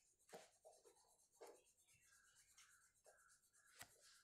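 Near silence: room tone with a few faint soft taps, a finger or stylus touching a phone touchscreen while writing on it.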